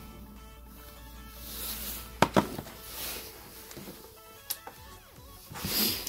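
Faint background music, with sharp clicks about two seconds in and again a little after four seconds, and handling noise near the end as the paper heater strip is picked up off the bench.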